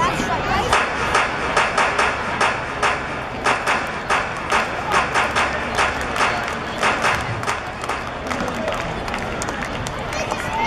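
Rhythmic clapping from the stands, about two claps a second, over crowd chatter; the clapping dies away near the end.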